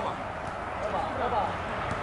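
Faint voices talking, no words clear, over a steady low background rumble.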